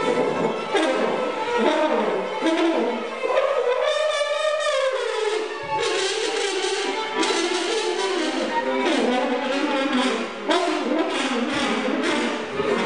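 Trombone and viola playing a duet in many short, shifting notes. In the middle comes one longer held note that arches up and then down in pitch.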